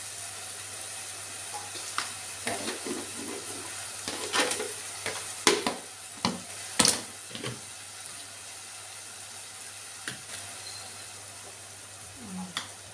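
Plastic food container being opened and handled: a scatter of light clicks and knocks from the lid and container, with two louder knocks in the middle, over a steady hiss.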